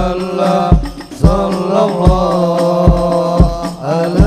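Hadroh ensemble playing: men chanting together through microphones over a deep bass drum that beats about twice a second, with frame drums.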